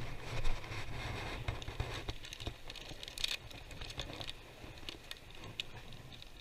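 Low, steady wind rumble on the microphone, with scattered light clicks and knocks from fishing gear being handled on the rocks, and a small bump about half a second in.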